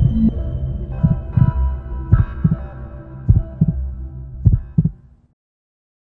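TV news channel ident jingle: synthesized music over a low drone, punctuated by deep thumps in pairs, which cuts off abruptly about five seconds in.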